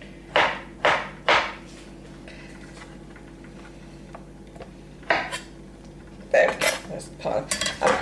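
Chef's knife striking a wooden cutting board as avocado is sliced: three quick knocks near the start, one more about five seconds in, then a rapid run of knocks and clatter near the end.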